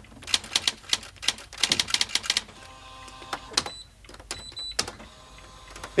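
Typewriter keys clacking in quick runs with short pauses between, and a couple of brief high pings near the middle.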